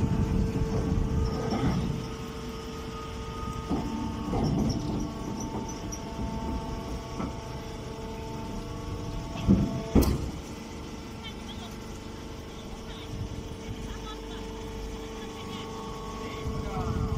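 Hay baling machine's power unit running with a steady hum, louder and rougher for the first two seconds, then settling. A single sharp knock about ten seconds in.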